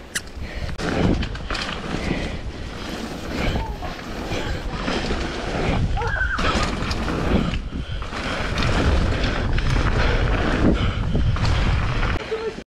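Mountain bike ridden fast down a wet dirt trail: wind buffeting the microphone, with the rumble of knobbly tyres on wet dirt and gravel and scattered knocks as the bike hits bumps.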